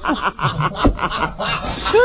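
People laughing and chuckling in quick, overlapping bursts at a joke.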